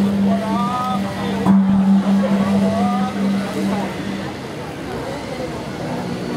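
A man's voice intoning a ceremonial Brahmin chant in short rising phrases over a steady low hum that fades out about four seconds in.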